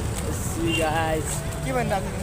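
A young man's voice talking in short phrases over a steady low rumble of street noise.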